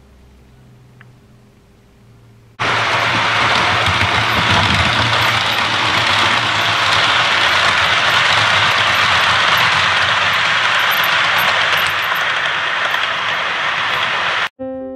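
A loud, steady rumbling rush of a train running on rails, starting abruptly about two and a half seconds in after faint room tone.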